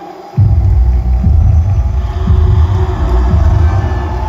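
Live concert music over an arena PA system: a loud, heavy bass-driven beat cuts in abruptly about half a second in and carries on steadily.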